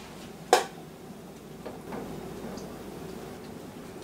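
A single sharp click about half a second in as a filled glass pint mason jar is lowered into the water-bath canner with a jar lifter, followed by faint steady noise.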